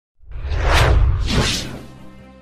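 Sound effects from a breaking-news intro: two whooshes over a deep bass rumble. They start a moment in and fade near the end.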